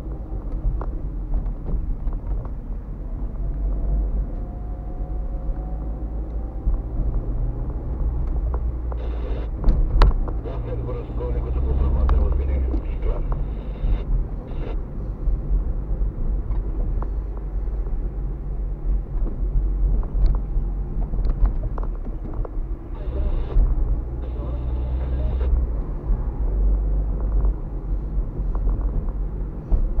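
Car driving slowly in traffic, heard from inside the cabin: a steady low engine and tyre rumble that swells a little at times, with scattered small knocks and a sharp knock about ten seconds in.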